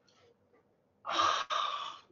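Near silence, then about a second in a man's loud, breathy breath close to the microphone, broken briefly midway.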